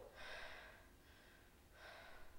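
Faint, slow breathing of a woman lying on the floor: two breaths, about a second and a half apart.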